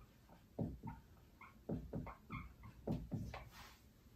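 Dry-erase marker writing on a whiteboard: a quick run of short scratchy strokes, with a few brief squeaks about halfway through.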